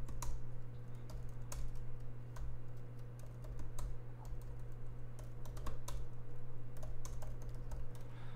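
Typing on a laptop keyboard while searching online: irregular, scattered keystroke clicks over a steady low hum.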